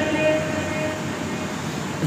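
Steady airy hiss of an electric pedestal fan running beside the microphone, in a short pause in a man's speech.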